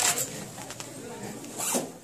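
Handling noise from a phone held against clothing: soft rustling, then a short, sharp rasping scrape near the end.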